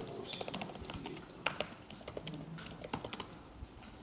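Typing on a computer keyboard: a run of irregular, quick keystroke clicks.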